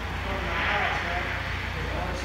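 Ultrasonic leak detector's earphone output: a rushing, wind-like hiss over a steady low hum. The hiss swells about half a second in as the probe picks up dry nitrogen escaping from a leak in the aftermarket condenser.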